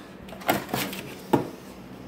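Three sharp clicks and knocks within about a second, from hands working the throttle cable and metal throttle linkage on a golf cart's swapped-in gas engine.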